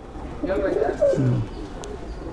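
Domestic racing pigeon cooing: low, rolling coos about half a second in, one of them dropping in pitch.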